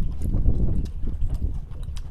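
Wind rumbling on the microphone, with scattered sharp clicks of eating: chopsticks against rice bowls and chewing.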